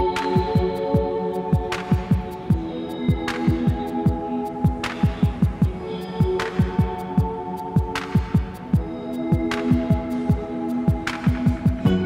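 Electronic background music: sustained chords over a deep kick drum that hits several times a second, with a sharp clap about every second and a half.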